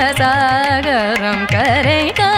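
Carnatic classical vocal music in Jaganmohini raga and Rupaka tala: a woman's voice holding and bending notes with heavy ornamentation, over regular hand-drum strokes.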